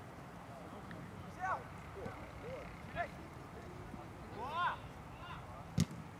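Football players' short shouts and calls during a training match on an open pitch, with a sharp kick of the ball near the end as the loudest sound.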